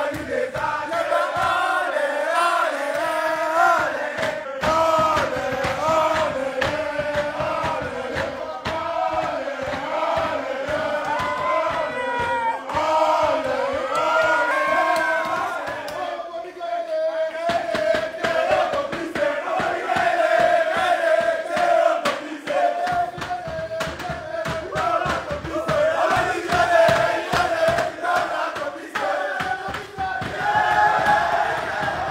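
A group of men chanting and singing together in unison, with many sharp percussive hits running through the singing.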